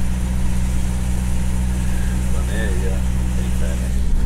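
Steady low drone of a diesel engine running, heard from inside a truck cab, with a brief faint voice about halfway through.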